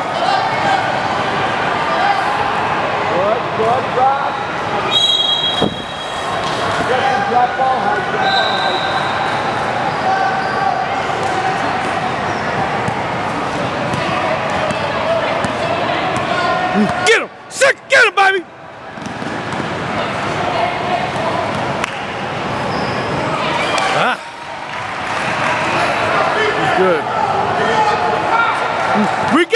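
Basketball game sound in a large gym: a ball dribbled and bouncing on the court over a steady din of player and spectator voices. A few sharp knocks come a little past halfway through.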